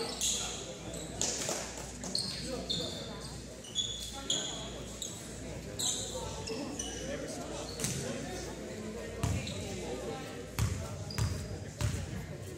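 Basketball shoes squeaking in short chirps on a hardwood gym floor, then a basketball bouncing a few times on the court later on, with voices echoing in the gymnasium.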